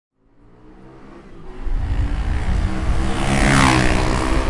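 A motor vehicle engine growing steadily louder as it approaches, then rushing past about three and a half seconds in.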